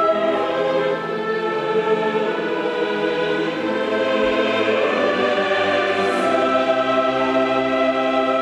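Mixed choir singing sustained chords together with a full symphony orchestra.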